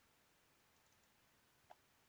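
Near silence, with a single faint click of a computer mouse button near the end.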